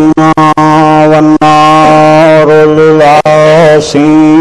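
A man's voice chanting Arabic recitation in long, held melodic notes, loud through a microphone: the opening khutba of the sermon.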